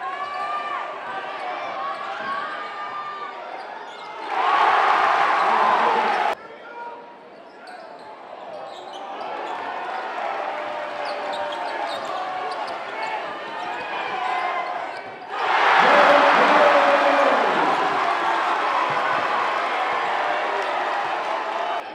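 Basketball dribbling on a hardwood gym floor over steady crowd chatter. The crowd cheers loudly twice: about four seconds in, cut off suddenly two seconds later, and again from about fifteen seconds in.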